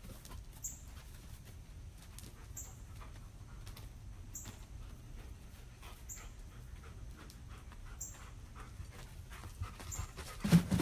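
A dog panting faintly in quick, irregular breaths, over a low steady background hum.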